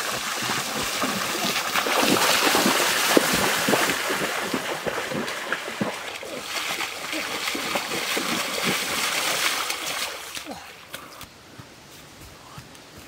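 Feet splashing hard through shallow stream water as a person runs through it, throwing up spray, a quick run of splashes that lasts about ten seconds. The splashing fades near the end.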